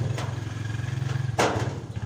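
A steady low rumble, with one sharp knock about one and a half seconds in.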